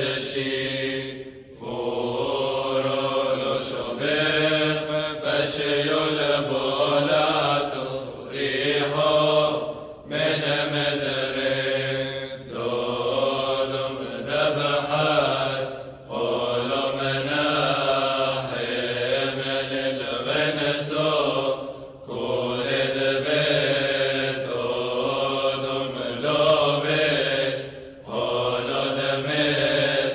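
Male voices chanting a Syriac Orthodox evening-prayer hymn in long sung phrases, with a short pause for breath every few seconds.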